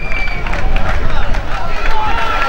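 Shouts from players and spectators at an outdoor football match, over heavy wind rumble on the microphone. A steady high whistle blast ends about half a second in.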